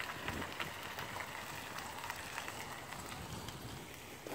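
Faint, steady outdoor noise with a light, irregular crackle of small ticks.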